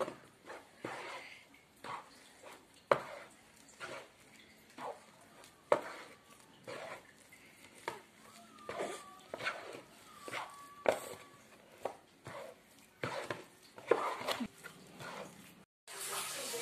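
A plastic spatula scraping and knocking in a plastic tub as glutinous rice flour and grated coconut are stirred together, in irregular strokes about once a second. Two faint short high whines come in the middle.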